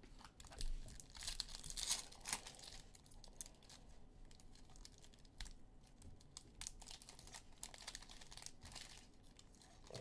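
Foil wrapper of a pack of baseball cards torn open with a crackly crinkling, loudest in the first couple of seconds, then lighter crinkles as the cards are pulled out of the wrapper.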